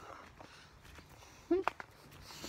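Faint footsteps on a path with quiet outdoor background, broken by one short voice sound about one and a half seconds in.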